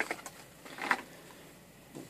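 Soft handling noise: a few light clicks and rustles as packaged parts are picked out of a cardboard box.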